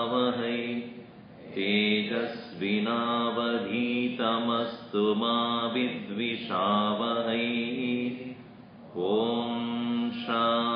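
A man chanting a mantra on a steady, held pitch in long phrases, pausing briefly for breath about a second in and again near the end.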